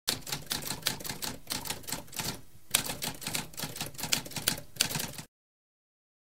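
Typewriter keys being struck in a fast, continuous run of clacks, with a short break about halfway, stopping abruptly a little after five seconds.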